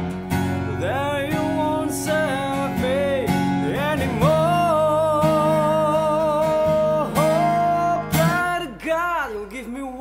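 A man singing to his own strummed acoustic guitar. His voice slides between notes and holds one long note through the middle, and the strumming thins out near the end.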